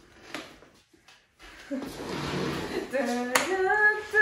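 Hands clapping quickly for a couple of seconds, starting about a second and a half in, with one sharp clap near the end. A woman's voice rises in a short, high, pitched cheer or laugh at the end.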